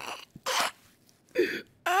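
A man's stifled laughter: three short, breathy bursts of exhaled laughs, with a voiced laugh beginning right at the end.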